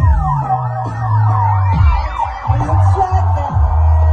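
Dub reggae playing loud through a sound system: a heavy bassline with a swooping siren effect repeating over it in quick overlapping sweeps, which fades out after about three seconds.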